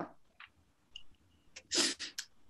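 A short, sharp breath noise from a woman near the end, with a faint click a little earlier.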